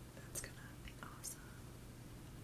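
A woman whispering to herself, faint and breathy, with two short hissing 's' sounds about a third of a second and a second and a quarter in.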